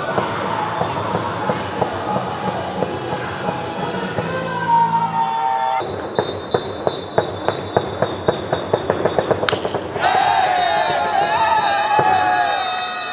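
Music plays over the first half. Then comes a run of sharp ticks that quicken over a steady high tone, and a single sharp crack of a bat meeting the ball about nine and a half seconds in. Players then shout and cheer.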